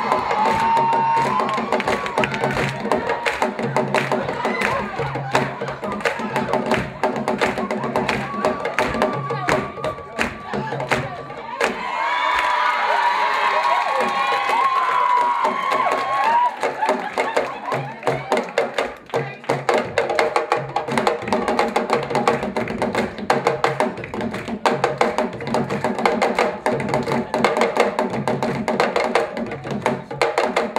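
Live ensemble of djembe-style hand drums played fast, with dense, continuous strokes. Audience voices and cheering rise over the drumming at the start and again around the middle.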